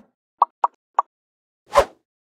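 Logo-animation sound effects: three short pops in quick succession, then a louder brief swoosh with a low thud near the end.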